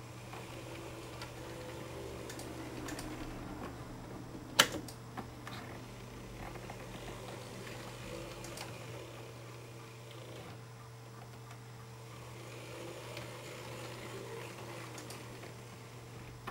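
Small electric motor of an N-scale model locomotive whirring as it runs slowly along the track, its pitch rising and falling gently, with a sharp click about four and a half seconds in.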